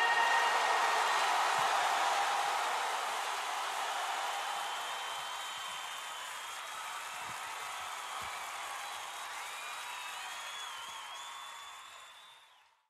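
Closing noise effect of a psytrance track: a broad, hiss-like wash with no beat that slowly fades away, with faint, high, wavering tones gliding in over its last few seconds.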